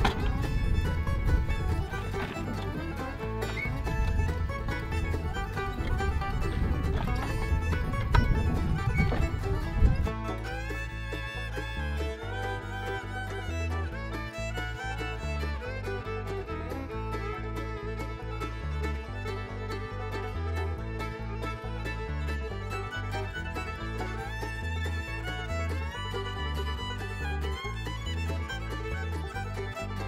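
Upbeat background music with fiddle and a stepping bass line. For about the first ten seconds a louder rough rumble sits under the music, then only the music remains.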